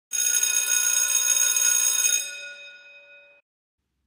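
A bell ringing: it starts suddenly, rings steadily for about two seconds, then dies away over the next second or so.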